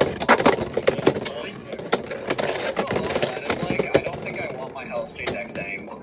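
Spinning Beyblade X tops (Dran Sword 3-60 Low Flat against Wolf) clashing in a plastic stadium: rapid sharp clacks of the tops striking each other and the stadium rail, thickest in the first second or so and coming more sparsely after that.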